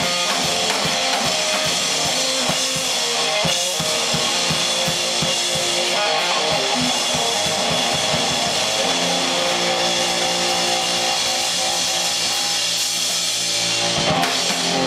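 Live electric guitar and drum kit playing blues rock without vocals. Drum strokes come thick and regular in the first half. From about two-thirds through, a guitar chord is held ringing while the drumming thins out.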